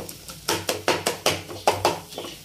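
Metal spoon clicking and scraping against a metal kadai while stirring scrambled egg with onion: a quick run of sharp clicks, about six a second, starting about half a second in.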